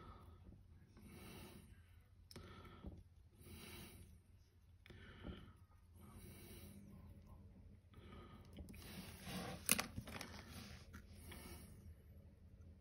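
Faint breathing close to the microphone: soft puffs of breath every second or so. There is one sharp click a little before ten seconds.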